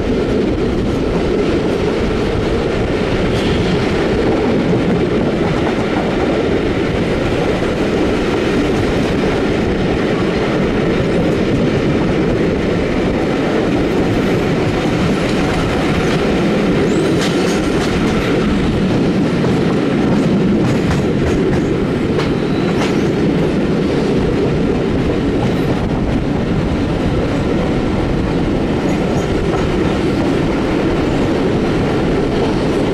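Passenger coaches of a steam-hauled train running at speed, heard from a carriage window. A steady rolling rumble carries light clicks of the wheels over rail joints.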